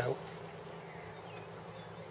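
A steady low-pitched hum with a faint hiss behind it.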